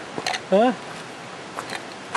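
A person's short vocal sound about half a second in, over a steady outdoor hiss, with a few faint ticks of footsteps on the rocky dirt path.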